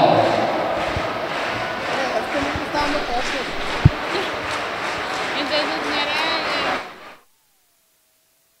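Indoor basketball arena crowd noise during a timeout: a hubbub of indistinct voices, one sharp thump about four seconds in and a warbling high whistle-like tone near the end. The sound cuts off abruptly about seven seconds in.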